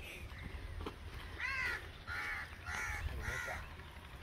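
A crow cawing four times in quick succession, the calls about half a second apart.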